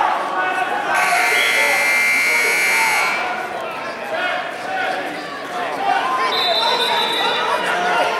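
Gym scoreboard buzzer sounding steadily for about two seconds, starting about a second in, over crowd chatter. A shorter, higher steady tone follows near the end.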